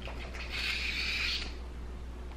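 Handheld vegetable peeler drawn along a cucumber's skin: one scraping stroke of about a second, starting just under half a second in.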